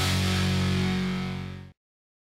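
Short music jingle for a section title card, ending on a held chord that fades out about three-quarters of the way through, followed by silence.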